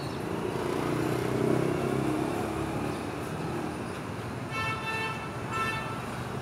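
Motorbike traffic on a city street: an engine swells as it passes and fades away over the first few seconds, then a horn beeps twice near the end.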